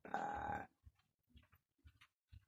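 A man's pained vocal cry lasting well under a second, during a seizure episode, followed by a few faint small clicks.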